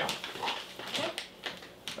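A short, high whimper-like sound about half a second in, then a few light crackles of a plastic snack pouch being handled.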